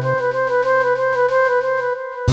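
Instrumental passage of a karaoke backing track: held, steady chords with a sustained melody note over them. A low note drops out early, and the whole chord stops just before the end.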